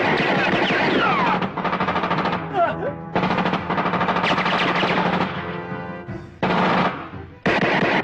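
Film sound effects of automatic gunfire in rapid bursts, about five in all with short gaps between, the longest lasting about two seconds, over background music.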